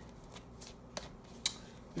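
Tarot cards being handled: three soft clicks about half a second apart, the sharpest about one and a half seconds in.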